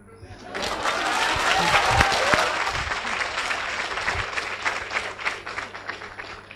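Audience clapping, swelling within the first second into dense applause and then slowly thinning out, with a few voices mixed in.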